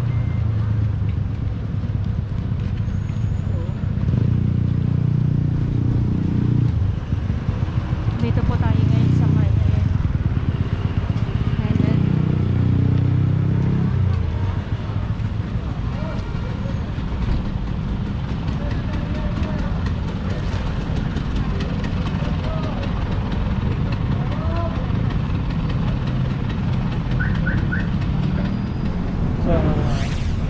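Motor-vehicle engine running close by, a low hum that is loudest in the first half and then eases off, with people talking faintly in the background.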